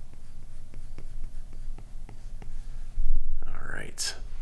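Apple Pencil tip tapping and sliding on the iPad's glass screen, a series of light ticks over a faint steady hum. Near the end a louder breath at the microphone.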